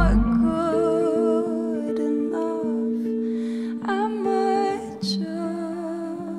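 Live band in a quiet passage of a pop song: the bass falls away just after the start, leaving long held chords under a soft wordless vocal line.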